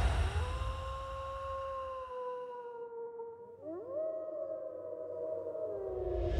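Wolf howling: one long, gently falling howl, then a second howl that swoops up about halfway through and slowly sinks toward the end.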